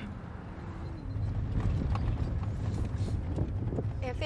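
Horse hooves clip-clopping at a walk: a scatter of irregular knocks over a steady low rumble.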